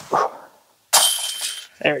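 A short, sharp sound right at the start, then about a second later a disc golf putt hitting the basket's hanging metal chains: a jangling rattle lasting most of a second as the putt goes in.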